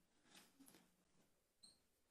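Near silence: room tone, with a faint, short high-pitched squeak about one and a half seconds in.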